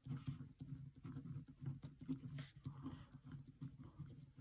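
Pen writing on a paper worksheet: faint, irregular scratches and light taps of the pen strokes.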